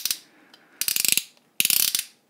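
Ratcheted plastic shoulder joint on the Alien Attack APK-02 add-on arm for Megatron being swung, clicking in three short runs of rapid clicks.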